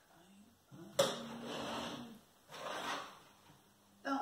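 Cut flowers and foliage being handled: a sharp click about a second in, then two spells of rustling, each about a second long.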